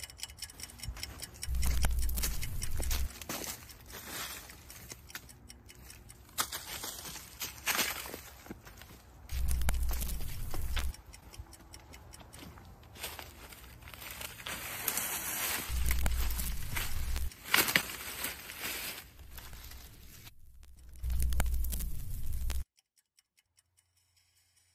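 Footsteps crunching and rustling through dry fallen leaves, with a deep low rumble that swells four times, about every six seconds. Everything cuts off suddenly near the end.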